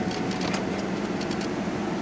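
Steady cabin hum of a 2007 Cadillac Escalade idling, its engine running with the climate-control fan blowing.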